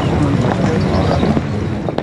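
Footsteps of a large group walking together on stone paving, amid a loud, steady outdoor crowd din.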